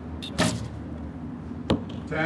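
A recurve bow shot: a sharp knock as the string is released, then, just over a second later, a second sharp knock as the arrow strikes the target, over a steady low hum of background noise.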